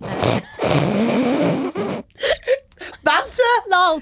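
A woman's voice making a loud, raspy, drawn-out vocal noise for about two seconds, followed by short pitched voice sounds.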